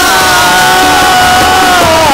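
A long, high held note from a sung Telugu devotional verse, with musical accompaniment. The note holds steady with a slight waver and dips a little in pitch near the end.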